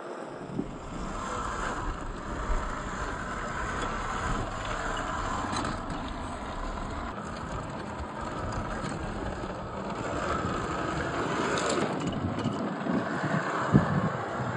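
Traxxas TRX-4 RC crawler's electric motor and gearbox whirring steadily as it climbs over rocks, with a few clicks and scrapes from the tyres and chassis on stone, the loudest just before the end. Light wind on the microphone.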